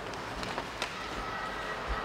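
Ice hockey play heard from the stands: a low rush of skates on the ice, broken by a few sharp clacks of sticks and puck. A faint steady tone comes in about halfway through.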